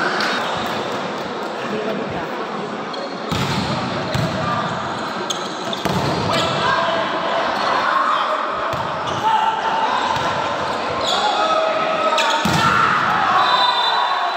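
Volleyballs being struck and bouncing on the court floor of an indoor sports hall, several sharp knocks over a steady babble of voices, all echoing in the large hall.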